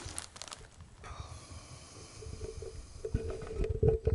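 A man snoring, a steady nasal tone that grows into a few low snorts towards the end. At the very start the plastic wrapping of a toilet-paper pack crinkles briefly.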